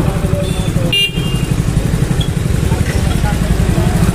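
Hero commuter motorcycle's single-cylinder engine running at low speed close to the microphone, a steady low throb, with a brief disturbance about a second in.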